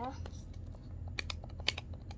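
A few light, sharp plastic clicks, two quick pairs about half a second apart, from fingers working the cap of a Slime Licker candy tube.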